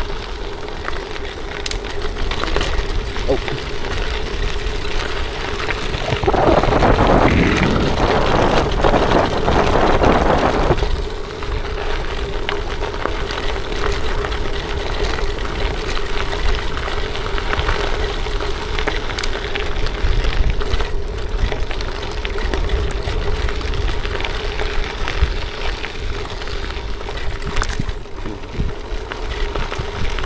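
Bicycle tyres rolling over a gravel track, with wind rushing over the microphone and a steady low hum underneath. About six seconds in the noise grows louder and rougher for some five seconds, then settles back.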